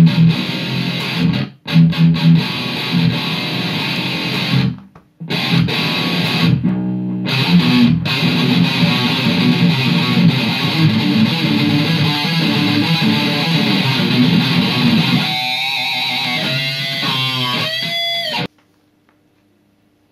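Flame electric guitar played through an amp with a heavy, distorted tone: a low riff on the thickest strings built on the tritone, breaking off briefly a few times. In the last few seconds high notes bend up and down, then the playing cuts off suddenly.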